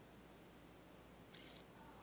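Near silence: faint room tone, with one brief, soft hiss a little before the end.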